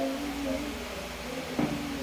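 Steady low room hum with a faint, slightly wavering tone and a brief faint sound about one and a half seconds in.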